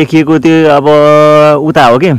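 A person's voice speaking, drawing out one long steady vowel for more than a second in the middle.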